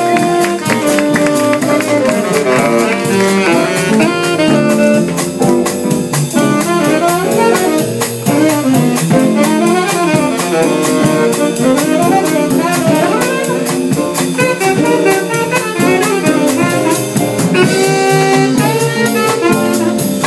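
Live jazz combo playing: saxophone melody lines over a drum kit keeping steady time on the cymbals.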